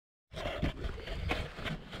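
Wind rumbling on a handheld camera's microphone, with a few faint footsteps on gravel and some handling noise.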